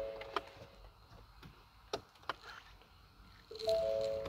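A few faint clicks, then about three and a half seconds in an electronic dashboard chime of a 2017 Ford Explorer sounds: several steady tones coming in one after another and ringing on.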